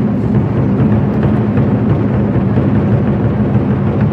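An ensemble of large Chinese barrel drums played with sticks in a fast, dense, unbroken stream of strokes, deep and loud.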